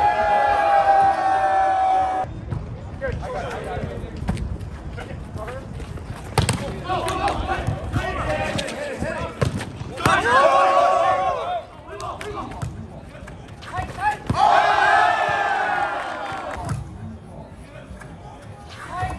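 People shouting and yelling during a volleyball rally, with sharp smacks of hands striking the ball. A long held yell opens it, a burst of shouting comes about ten seconds in, and another held yell follows around fifteen seconds.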